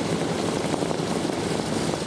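Ford Tri-Motor's radial engines running with propellers turning, a steady, even drone.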